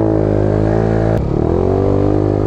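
Motorcycle engine running under throttle while riding: a steady note, a brief break about a second in, then the revs climbing again and levelling off.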